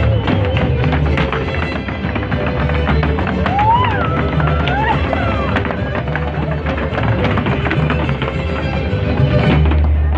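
Live Mexican folk dance music played loud, with the dancers' zapateado footwork: quick, sharp heel and toe stamps on the stage floor throughout.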